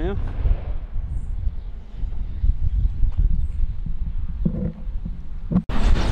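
Wind rumbling on the microphone with the irregular scuff of footsteps on a path, and faint voices briefly near the end. No train or whistle is heard.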